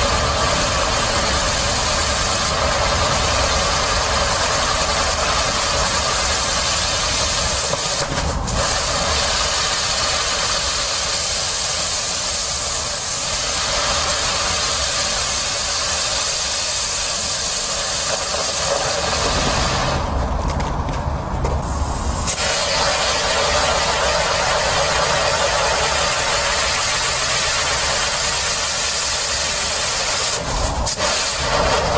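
A firework spraying a column of sparks, with a loud, continuous hiss that sputters and thins for a couple of seconds about two-thirds of the way through.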